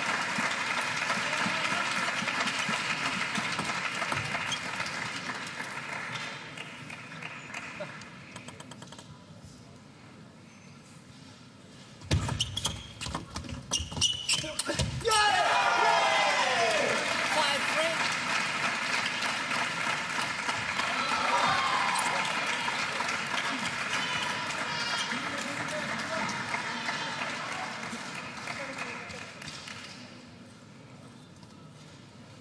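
Crowd voices shouting and chanting, dying down to a hush. Then comes a table tennis rally: a quick run of sharp ball strikes on bats and table over about three seconds. Right after it the crowd breaks into cheers and shouts that slowly fade.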